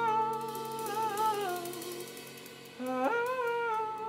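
A male singer holds a wordless vocal line over acoustic guitar and light cymbal taps. The line wavers and slides downward, fades, then leaps back up about three seconds in.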